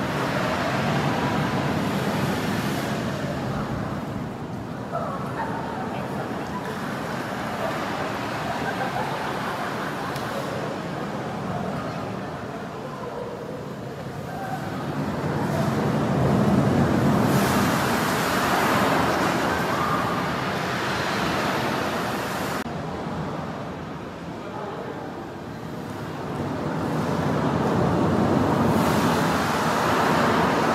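Recorded ocean surf played through the loudspeakers of an immersive wave-projection room: a broad rushing roar of breaking waves that swells and ebbs every several seconds, with the biggest surges past the middle and near the end.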